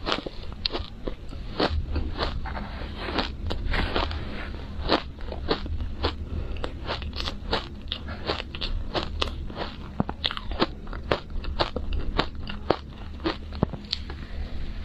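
Crushed ice being bitten and chewed close to the microphone: a rapid, irregular run of sharp crunches and crackles, several a second.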